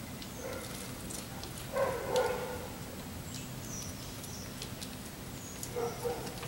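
Songbirds chirping in short high notes and ticks around backyard feeders, with one louder, lower animal call about two seconds in and a shorter one near the end.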